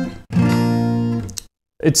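Acoustic guitar chords strummed: one chord dies away at the start, then a fresh chord rings for about a second and cuts off suddenly. These are minor chords of the key, played as the same shapes moved along the fretboard. A man's voice starts just at the end.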